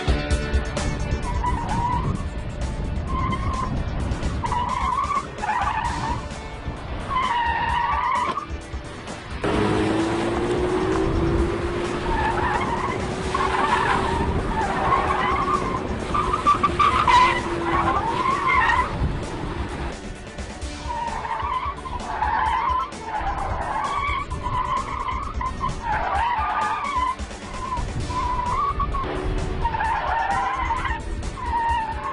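Car tyres squealing in repeated wavering bursts as a car is thrown hard through a cone slalom, the tyres sliding at the limit of grip.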